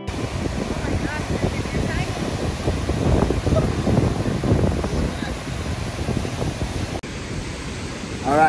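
Strong wind buffeting the microphone over the steady wash of large waves breaking against shoreline rocks.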